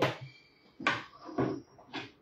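A few light knocks and clinks of kitchenware being handled on a stainless-steel stovetop, roughly one every half second, one followed by a faint metallic ring.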